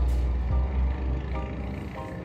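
Background music with a deep, steady bass line and short chords repeating about every half second.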